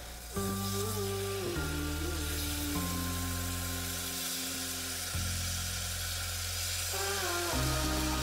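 Onions, red peppers and beef sizzling in a non-stick frying pan, under background music of held notes that change every second or two.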